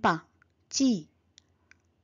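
A woman's voice saying a single word, 'bind', with a falling pitch, a little under a second in, followed by a couple of faint clicks.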